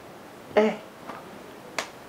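A short spoken "Eh" about half a second in, then a single sharp click near the end, such as a finger snap or tongue click, over quiet room tone.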